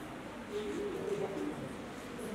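A bird's low cooing call, lasting about a second and starting about half a second in.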